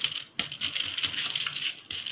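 Fingers patting and pressing soft dhapata dough flat on a plastic sheet: a quick, uneven run of soft pats and plastic crackles, with a sharper slap about half a second in.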